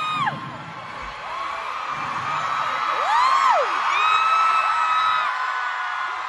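Concert crowd screaming and cheering, with several fans' high-pitched shrieks held over the noise. One shriek rises and falls about three seconds in, and the screaming is loudest in the middle.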